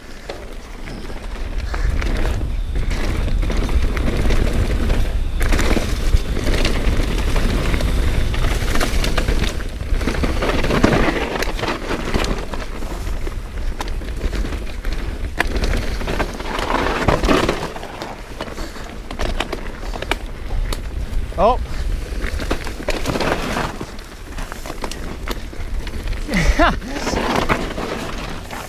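Mountain bike riding fast down a dirt singletrack: wind buffeting the camera microphone over the crunch and rattle of tyres and bike on the loose, dry trail.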